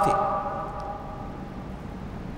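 A man's amplified voice ends a word at the start, and its ringing tail fades over about a second and a half into faint, steady room tone of a hall.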